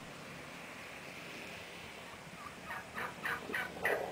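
Wild turkeys calling. After a quiet first two-thirds, a run of short calls starts, about three a second, and keeps going.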